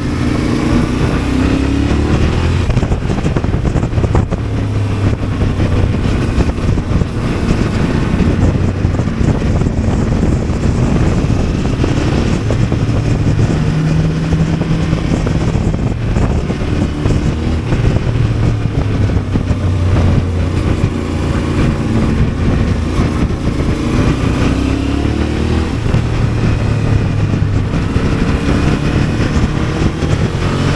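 Onboard sound of a Yamaha motorcycle being ridden: its engine note rises and falls again and again as the rider rolls on and off the throttle, over steady wind noise on the microphone.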